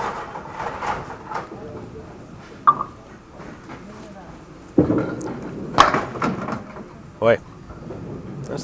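Candlepin bowling alley ambience: spectators murmuring in the background, with scattered sharp clicks and a heavy low knock about five seconds in as the small candlepin ball is delivered onto the wooden lane.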